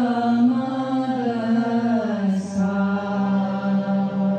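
Group of women singing a devotional chant in unison, holding long notes, with the melody dipping about halfway through, over a steady harmonium note.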